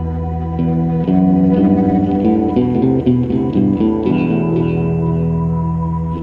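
Music: a held low drone with a run of short, stepping notes over it from about half a second in, easing back to the drone near the end.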